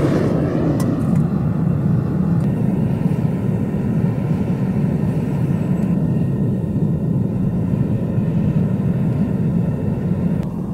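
Gas-fired melting furnace running, its burner making a steady rushing noise as scrap aluminium melts in the crucible. A light click sounds about a second in.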